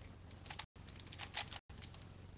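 Plastic Rubik's cube being turned by hand: quick clicking of the layers as they twist, loudest in a few rattling turns about half a second in and again past a second. A low steady hum sits under it, and the recording drops out briefly twice.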